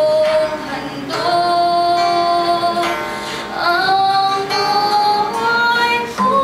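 A girl singing a slow song in long held notes, accompanied by an acoustic guitar.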